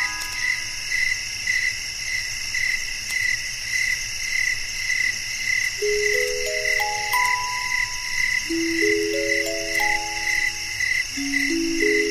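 Crickets chirping in a steady chorus, one chirp pulsing about twice a second. About six seconds in, a music box begins a slow melody of ringing notes.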